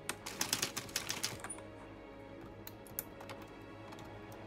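A quick run of light plastic clicks from the Addi Express knitting machine in the first second and a half, then a few single clicks, over faint background music.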